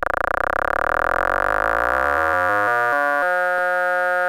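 Electronic synthesized tones: a steady held chord of several pitches, its lower part breaking into stepped, stuttering blocks that grow slower and choppier toward the end.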